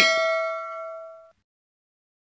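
A single bell-like ding sound effect for a notification bell, a chime of several steady tones that rings and fades, then cuts off suddenly after about a second and a quarter.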